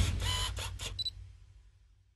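A quick run of about five sharp mechanical clicks, some with a brief ringing tone, over a fading low rumble. It all stops about a second in, leaving silence.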